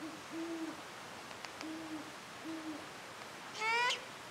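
Great horned owl hooting: a series of four low hoots, the second drawn out and the last two evenly spaced. Near the end comes a short, louder rising call, the loudest sound.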